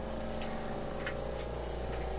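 A steady low hum with a few faint steady tones above it, and two faint clicks about half a second and a second in.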